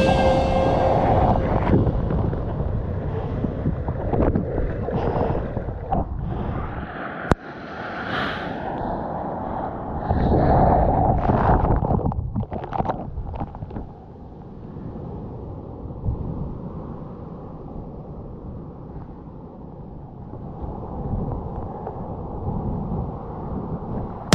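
Rushing sea water and surf picked up by a GoPro in the water, muffled and dull, swelling and easing with the waves. There are surges about eight and eleven seconds in, a sharp click about seven seconds in, and a quieter, steadier wash after that.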